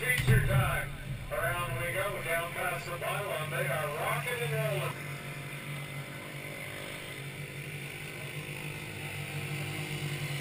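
Stock car engines make a steady low drone from the race on the oval. An unclear public-address voice runs over it for the first five seconds, and there is a brief low thump just after the start.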